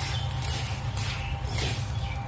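Spatula scraping and tossing dry toasted rice grains and sausage pieces around a metal wok, in repeated strokes about twice a second, over a steady low hum.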